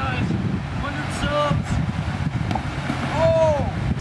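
Wind noise buffeting the microphone throughout, with brief distant voice calls about a second in and again near the end.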